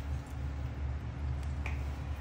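A steady low hum with a few faint small clicks over it, the sharpest one near the end.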